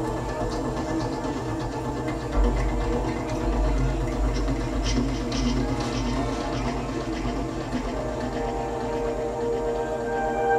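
Live electronic music from synthesizers: several steady layered drones, with a deep bass swell coming in about two and a half seconds in and easing off later, and a few faint clicks.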